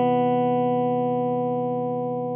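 Electric guitar's final chord ringing out, held and fading slowly.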